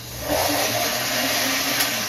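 Countertop blender running in a short burst, mixing a shake; the motor starts to wind down near the end.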